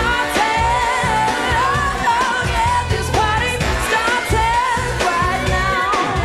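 A woman singing lead in a pop song, holding and sliding notes, over a full band with a steady drum beat and heavy bass.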